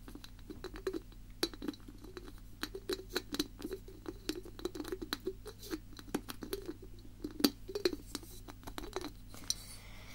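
Rapid, irregular tapping with the fingers on hard objects close to the microphone: many light, sharp clicks a second over duller knocks.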